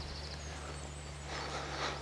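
Faint outdoor background noise with a steady low hum, and a faint high wavering chirp early on.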